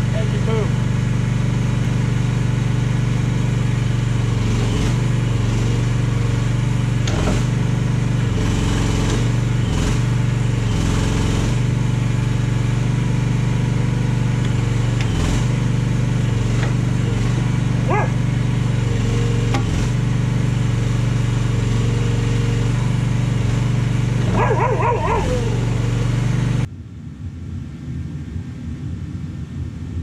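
Mini excavator's engine running steadily while the new hydraulic thumb is worked, its pitch dipping briefly several times under the hydraulic load, then shut off suddenly about 27 seconds in.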